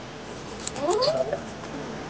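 A cat meowing once, a short call rising in pitch about a second in.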